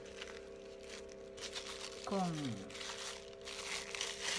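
Clear plastic wrapping crinkling as hands handle it around a lump of cold porcelain modelling paste, in short rustles in the second half.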